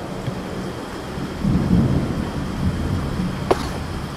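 Storm sound effect: steady rain hiss with low thunder rumbling that swells about a second and a half in.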